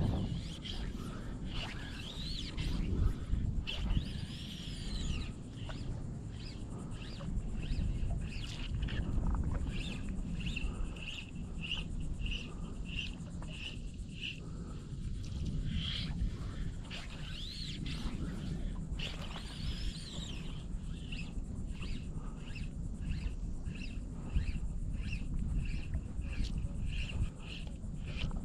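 A bird calling in long series of short, high chirps, about two a second, with a few longer whistles that rise and fall, over a steady low rumble of breeze and water.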